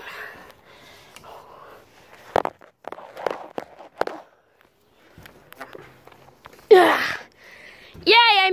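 Scattered knocks and scuffs of someone clambering onto a perforated metal playground deck, with a phone handled close against the metal. A short vocal sound of effort comes near the end.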